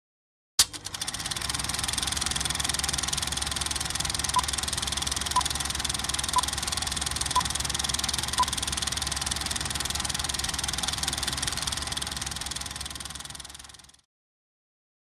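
Film projector running with a steady rapid clatter, starting with a click about half a second in and fading out near the end. Over it, five short beeps a second apart count down the film leader.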